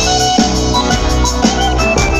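Live band music through a festival PA, heard from the crowd: a steady drum beat under a repeating melodic riff, with no singing in these seconds.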